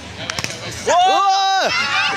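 A couple of sharp slaps of hands on a volleyball, then, about a second in, a loud, drawn-out shout from several people close by, rising and holding, in reaction to the point being played.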